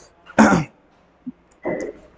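A man clearing his throat once, a short rough sound about half a second in, followed near the end by a brief voiced sound.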